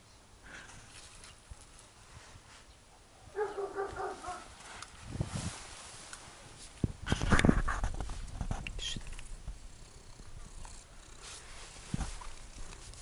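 Central Asian Shepherd (Alabai) puppy giving a quick run of short, high whining yelps lasting about a second. A louder rustling noise follows a few seconds later.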